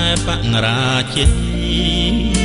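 A song with a male voice singing a held, wavering line over band accompaniment with a steady bass, and a drum hit a little past halfway.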